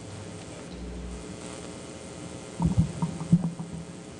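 Handling noise from a handheld microphone: a cluster of dull thumps and rumbles between about two and a half and three and a half seconds in, over a low steady hum.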